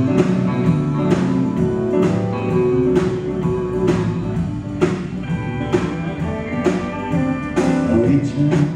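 Live country band playing an instrumental passage: electric guitar out front over bass, piano and a steady drum beat.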